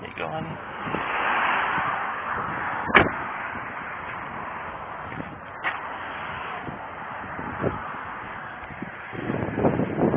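A car door slams shut about three seconds in, the loudest sound, against a rushing noise that swells over the first two seconds and then settles. A couple of lighter knocks follow.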